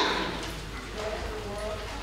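A woman speaking into a microphone: a phrase ends right at the start, then quieter speech follows.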